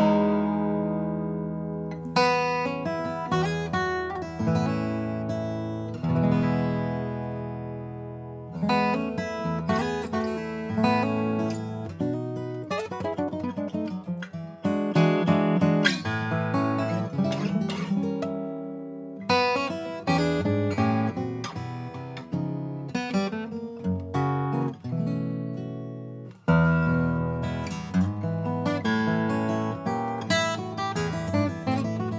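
Eastman E10 SS/V slope-shoulder steel-string acoustic guitar played fingerstyle on its own, low bass notes ringing under a higher melody. The playing comes in phrases with short breaths between them, and a loud chord starts a new phrase a few seconds before the end.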